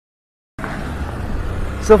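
Steady low background rumble with faint hiss that starts abruptly about half a second in, with a man beginning to speak at the very end.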